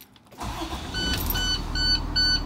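A school bus engine starting up about half a second in and then running steadily. From about a second in, an electronic warning beep sounds about three times a second over the engine.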